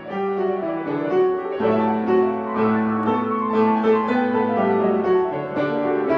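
Grand piano being played: a continuous run of chords and melody notes with no pauses.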